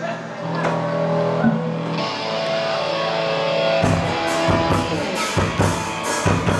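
Live post-punk band starting a song: held instrumental notes ring out, then the drum kit comes in about four seconds in with kick drum and cymbals, with guitar.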